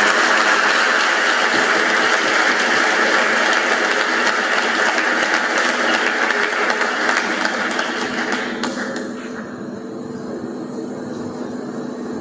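Audience applauding, a dense clatter of many hands clapping that thins out about nine seconds in.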